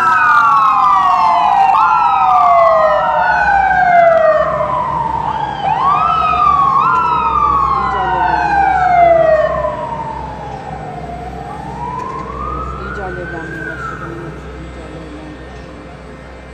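Emergency-vehicle sirens wailing, two of them sweeping up and down out of step. They are loud at first, grow fainter after about ten seconds and stop a couple of seconds before the end.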